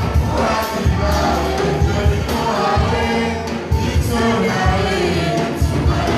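Live toirab (Comorian twarab) band music played through loudspeakers: several voices singing together over strong bass and repeated drum strokes.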